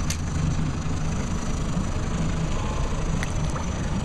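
Boat engine idling steadily with a low rumble, with faint clicks near the start and about three seconds in.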